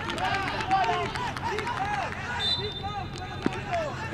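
Young men's voices shouting and calling over one another, players reacting to a penalty goal, with a few sharp claps or knocks among them. A brief high steady tone sounds about two and a half seconds in.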